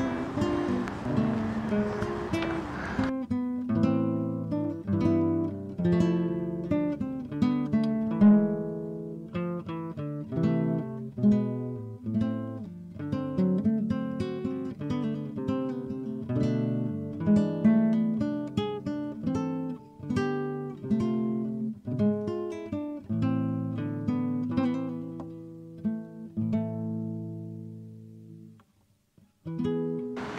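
Acoustic guitar music, picked notes ringing one after another. Outdoor background noise runs under it for the first three seconds, then the guitar plays alone and fades out a little before the end.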